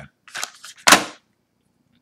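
Short handling scrapes of a screen protector retail package, then a single sharp smack about a second in as it is set down hard on the table.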